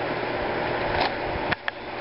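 Steady background hiss that drops away about three-quarters of the way through, with a few light clicks around the middle and near the end.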